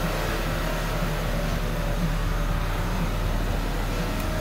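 The 2007 GMC Acadia's 3.6-litre V6 idling steadily, a low even hum heard from inside the cabin.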